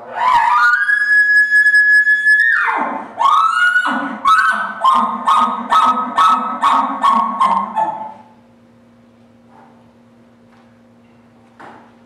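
Bull elk bugle blown on a call through a bugle tube: a whistle rises and holds high for about two seconds, then drops, followed by a string of about ten chuckles at roughly two or three a second that stops about eight seconds in.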